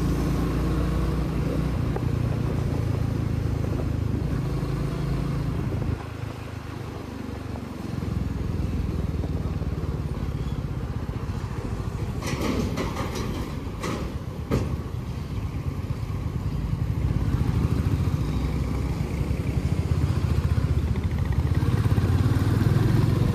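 Motorcycle engine running while riding; it drops back about six seconds in as the throttle closes and picks up again about two seconds later, building toward the end. A few sharp clicks or rattles come between about twelve and fifteen seconds in.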